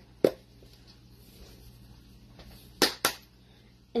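Plastic spice jar of onion powder being handled: a sharp click about a quarter second in, then two quick clicks close together near three seconds.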